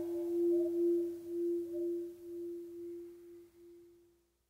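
The final note of a song rings on as one steady pure tone, with a fainter higher tone above it, slowly fading and dying away near the end.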